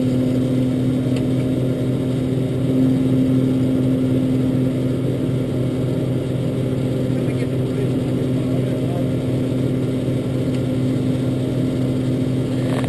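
Engine of a Pipehunter sewer-jetter truck running with a steady hum at an unchanging speed while the throttle switch is worked, the speed not going up or down: the switch is not working.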